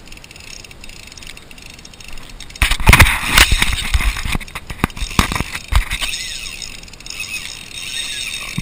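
Fly rod and reel handled close to the microphone while a hooked fish is played: a burst of irregular clicks, rattles and knocks with some dull thumps, loudest from about three to six seconds in. Softer ticking follows.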